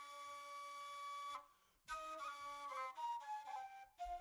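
A flute playing a slow melody: one long held note, a brief break about a second and a half in, then a short phrase of stepping notes that fades near the end.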